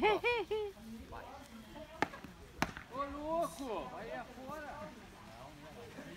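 Two sharp racket hits about half a second apart, in an outdoor net game, among people's voices calling out.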